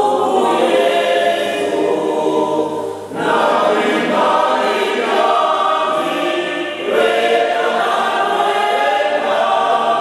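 Mixed choir of women's and men's voices singing together in parts, with short breaks between phrases about three and seven seconds in.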